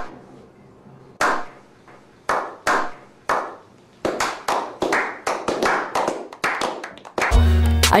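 A slow clap by a small group of men. Single claps about a second apart gradually quicken as more hands join in. Loud hip hop music with a heavy bass beat cuts in near the end.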